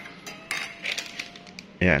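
Metal spoon clinking against a ceramic mug while stirring coffee: a handful of light, irregular clinks.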